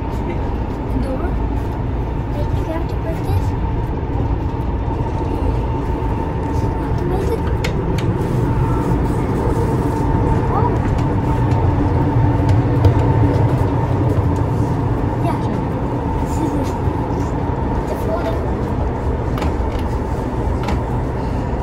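Running noise inside a moving AREX Express train: a steady low rumble with a thin steady hum above it and scattered small clicks and knocks. The low rumble grows stronger about halfway through.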